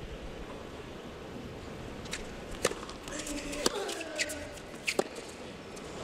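Tennis ball being hit in a rally on a hard court: a handful of sharp pops of ball on racket strings and court, starting about two seconds in, over the steady hush of a stadium crowd.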